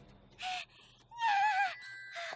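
Two short, screechy, animal-like cartoon vocal calls. The first is brief, about half a second in; the second is longer with a wavering pitch, a little past a second in.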